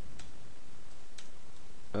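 Two computer-keyboard key clicks about a second apart, heard over a steady background hiss.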